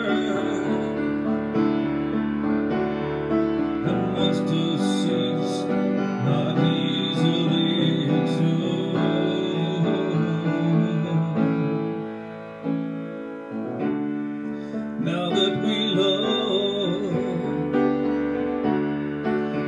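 Yamaha grand piano played solo in an instrumental ballad passage: sustained chords with a melody on top, changing every second or so, dipping quieter for a moment about two-thirds of the way through.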